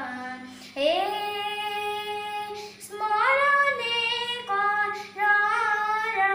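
A nine-year-old boy singing unaccompanied, a slow melody of long held notes that he slides up into, with short breaks between phrases.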